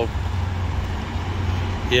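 Steady low rumble of semi-truck diesel engines running as trucks idle and manoeuvre for parking.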